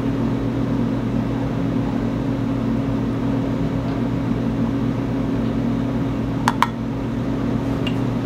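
Steady low mechanical hum of a running kitchen appliance. Near the end come two light clicks in quick succession.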